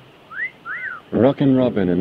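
Two short whistled chirps, the first rising and the second rising then falling, followed about a second in by a man talking.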